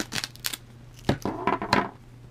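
Embroidery stabilizer being ripped out of a plastic embroidery hoop: a few sharp tearing crackles, then a longer burst of ripping in the second half.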